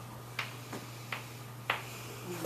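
Four short, sharp clicks or taps, irregularly spaced, over a steady low hum.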